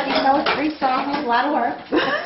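Indistinct children's voices talking, with no clear words.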